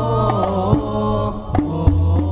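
Banjari-style sholawat music: a voice singing an ornamented melody that glides in pitch, over scattered frame-drum strokes and a sustained low bass tone.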